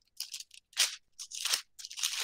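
A run of short, irregular rustles and crinkles: handling noise close to a headset microphone.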